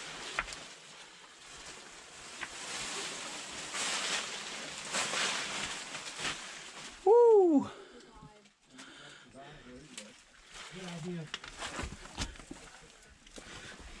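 Scraping and shuffling of people crawling through a tight shale cave passage, with boots, knees and clothing rubbing and knocking on loose rock. About seven seconds in, one short loud vocal grunt or exclamation rises and then falls in pitch.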